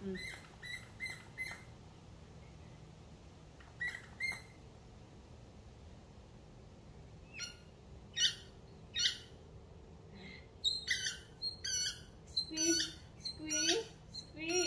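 A squeaky chicken-shaped dog toy squeezed by hand, giving short high squeaks: a quick run of about five at the start, two more near four seconds, then a denser run of louder squeaks through the second half.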